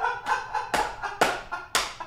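A run of sharp hand slaps, about two a second, from a man laughing hard.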